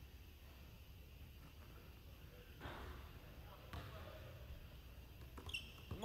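Faint basketball bounces on a hardwood gym floor: a few soft thumps about a second apart in the second half, under faint indistinct voices.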